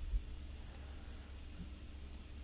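A single faint computer mouse click about three-quarters of a second in, over a low steady hum.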